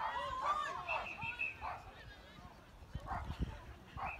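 A dog yapping in short high yelps, then a referee's whistle blown once, a steady shrill tone lasting about a second.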